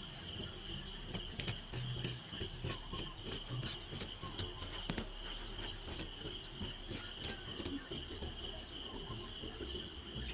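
Steady high-pitched chirring of insects, with scattered soft knocks and scrapes of a hand hoe working dry soil.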